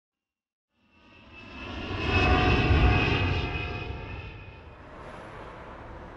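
An aircraft passing over, swelling to a peak about two seconds in and fading away, leaving a steady low rumble of background noise.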